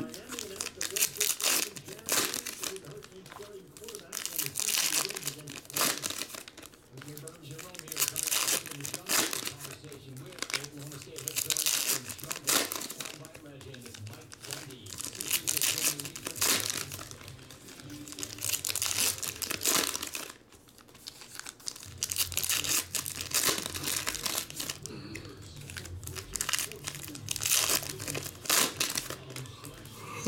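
Foil trading-card pack wrappers crinkling and tearing as packs are ripped open and handled, in crackly bursts every second or two.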